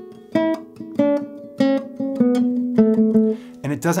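Classical guitar playing a slow descending tremolando scale. Each note is plucked several times, and the first pluck of each note is accented while the repeats stay quiet. A man's voice starts speaking near the end.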